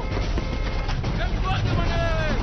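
Loud background din with a low rumble, over which voices call out in drawn-out, falling-pitch shouts about halfway through and near the end.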